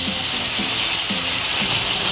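Sweet-and-sour soy sauce being poured into a hot frying pan of floured pork medallions, sizzling steadily as it hits the oil.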